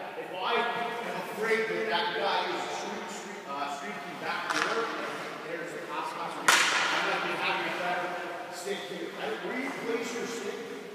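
A man's voice talking, too low to make out and echoing in a large rink, with one sharp crack about six and a half seconds in.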